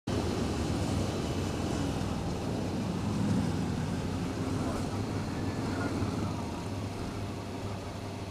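Motorcycle engine running steadily while riding, mixed with wind and road noise at a camera mounted on the bike. The sound eases a little near the end.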